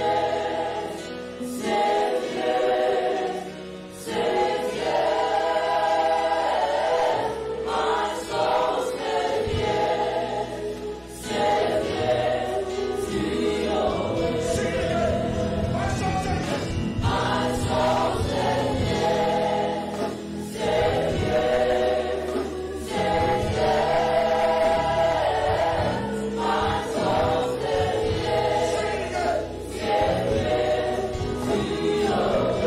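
Church worship team and congregation singing a gospel worship song together, with instrumental accompaniment.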